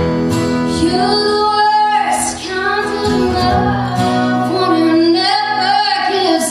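A woman singing live with acoustic guitar accompaniment from two guitars, her voice holding long notes that bend in pitch over steady guitar chords.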